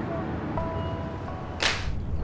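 A long whip lashed to drive a spinning top (whip-top), giving one sharp crack about one and a half seconds in.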